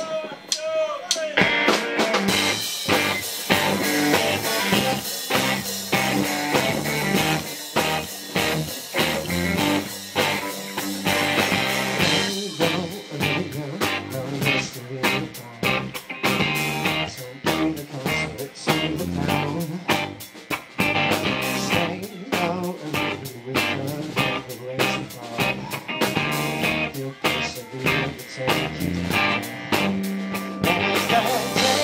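Live rock band playing the opening of a song on electric guitars and drum kit, the full band coming in about a second or two in and driving on with a steady beat.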